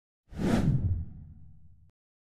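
Whoosh transition sound effect: a sudden swoosh with a low rumble under it, fading over about a second and a half and cutting off abruptly near the end.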